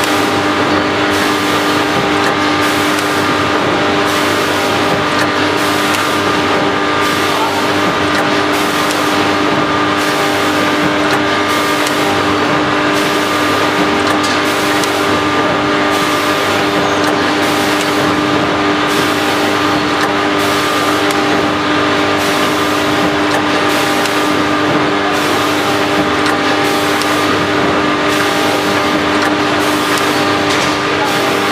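Vertical form-fill-seal packing machine running: a steady hum of several tones, with a regular stroke repeating a little under once a second as the machine cycles.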